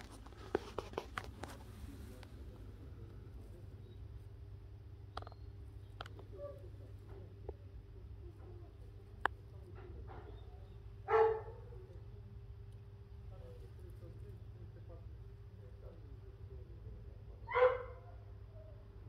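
A steady low hum with a few faint clicks, broken by two short barks of a dog, one about eleven seconds in and one near the end.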